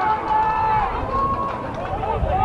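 Voices shouting and calling out across an outdoor football pitch during play, with a steady background of ambient noise.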